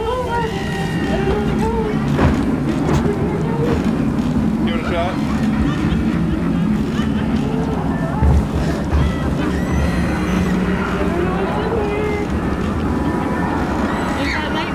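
Indistinct voices with gliding pitch over a steady low droning rumble, broken by a few sharp thumps.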